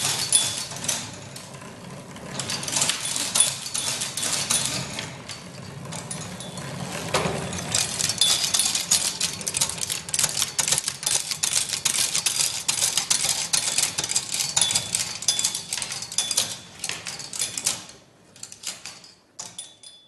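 Kinetic sound machine with a large spinning metal disc, worked by a hand wheel: a dense, rapid metallic clicking and clinking with a high ringing tone now and then. It thins to scattered clicks near the end and then stops.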